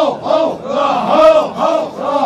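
Large group of Toda men chanting together in unison: a loud, rhythmic shouted call that rises and falls in pitch, about three calls a second.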